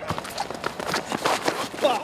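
Rapid running footfalls of several futsal players on artificial turf, with brief shouted voices near the end.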